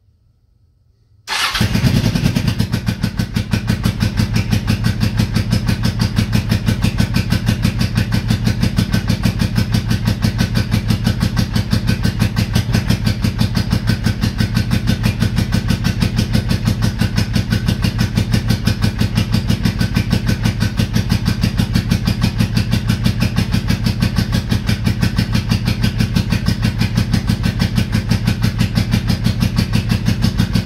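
1984 Honda Shadow 700's V-twin engine running steadily with a fast, even pulsing beat. The sound cuts in suddenly after about a second of near silence.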